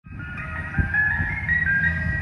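Ice cream truck jingle playing a melody of high, stepping notes, with a steady low rumble underneath.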